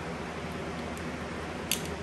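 A small bottle's cap being twisted open with effort, with a brief cluster of sharp clicks near the end as it gives, over a steady background hum.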